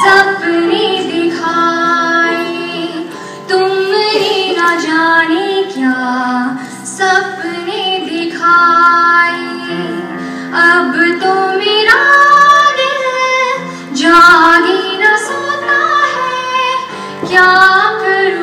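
A woman singing a slow melody into a microphone, with held notes and pitch glides, accompanied by sustained chords on an electronic keyboard.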